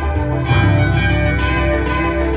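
Live-looped electric guitar music tuned to A=444 Hz: layered sustained notes ring over a low bass loop, with a new note struck about half a second in.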